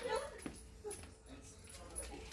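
Puppies whimpering faintly, a few short soft whines.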